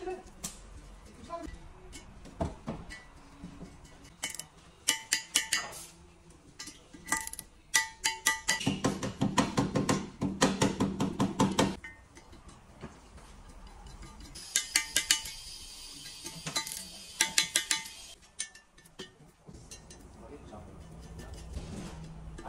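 Ratchet wrench on a long extension clicking in quick runs, with metallic clinks of the tool against a bare aluminium diesel crankcase, as the bolts of the piston cooling jets are turned.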